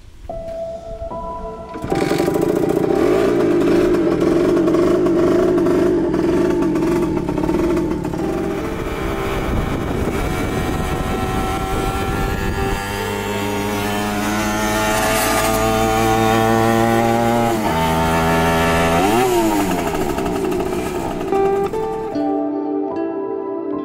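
Simson Schwalbe scooter's small two-stroke engine kick-started, catching with a sudden loud burst about two seconds in, then running and revving. Its pitch climbs steadily for several seconds as it pulls away, drops sharply, then swoops up and down again near the end.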